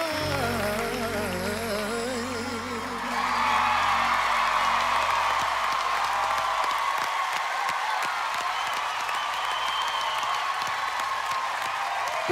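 A man's final sung note, wavering with vibrato over the band, ends about three seconds in. Studio audience applause and cheering rise over it and carry on, and the band fades out about seven seconds in.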